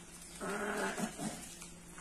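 An animal call: one held, even-pitched call lasting about half a second, then two short calls just after it.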